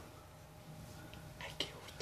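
Faint whispered voices over a low room hum, with a short sharp click about one and a half seconds in.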